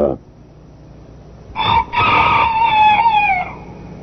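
A rooster crowing once, a single long cock-a-doodle-doo beginning about one and a half seconds in and falling in pitch at its end.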